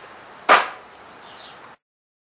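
A single sharp knock or slap about half a second in, over faint room tone; the sound then cuts off to silence shortly before the end.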